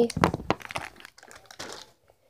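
Thin plastic wrapper of an L.O.L. Surprise pet crinkling and crackling as it is handled and opened, the crackles thinning out after about a second and stopping near the end.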